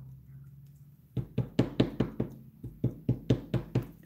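A plastic-cased Memento ink pad tapped repeatedly onto a cling stamp mounted on a clear acrylic block to ink it: light, sharp taps about five a second, starting about a second in.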